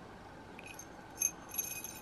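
Faint metallic clinks and a light jingle from a split key ring on a titanium kubotan pen as it is turned in the hand: a small tick, a sharper clink just past a second in, then a brief faint jingle near the end.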